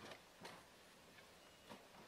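Near silence with three faint short knocks: one at the start, one about half a second in and one near the end.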